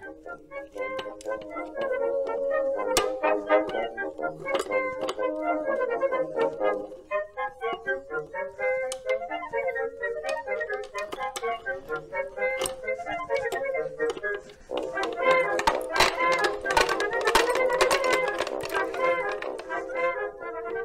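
Military band music with brass and woodwinds playing a light tune, with many sharp metallic clicks over it from a manual cable puller as its levers are worked and the steel cable is fed into it.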